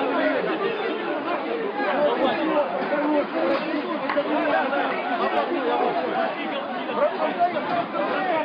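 A crowd of many people talking and shouting at once, a steady din of overlapping voices with no single speaker standing out.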